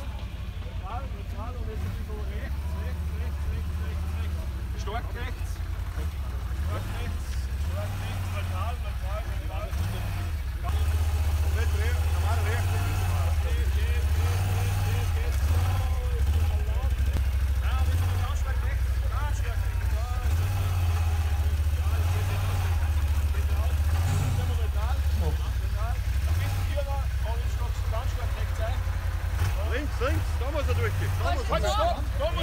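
Can-Am Outlander 1000 quad's V-twin engine idling, a steady low rumble that gets louder about a third of the way through. Voices talk faintly around it.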